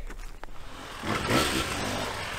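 Off-road motorcycle engine revving as the bike rides through woodland. It comes in about a second in and holds steady.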